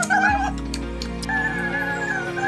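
Background music: a wavering, ornamented melody over steady held low notes.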